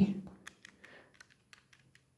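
Numbers being keyed into a calculator: a quick run of faint key clicks, about five or six a second.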